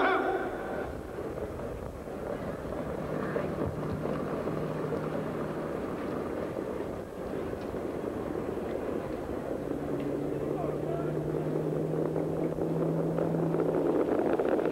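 Harness-racing mobile starting-gate car's engine running steadily as a low hum over a grandstand crowd's murmur, the whole growing gradually louder toward the end.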